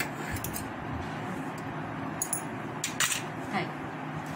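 Large metal tailor's shears cutting through black abaya fabric, their blades giving several sharp metallic clicks spread through the cut, the loudest about three seconds in.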